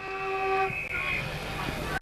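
Ground siren sounding a steady, horn-like chord that signals the start of play. Most of it cuts off under a second in, and the highest note lingers a moment longer.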